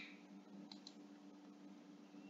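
A computer mouse button clicked once, a quick press-and-release pair of ticks about two-thirds of a second in, over a faint steady hum.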